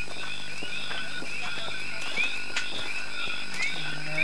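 A steady background of short rising chirps, repeated about three times a second, with no speech.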